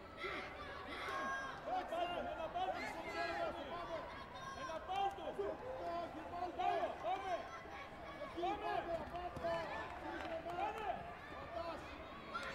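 Several people's voices calling and talking over one another in a sports hall, with no single voice standing out.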